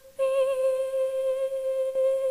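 A young woman's solo voice singing unaccompanied into a microphone. She holds one long high note that starts about a quarter second in, wavers slightly at first, then stays steady.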